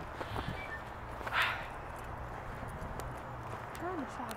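Footsteps of a person walking, with a steady low rumble of wind on the microphone and a short hiss about a second and a half in.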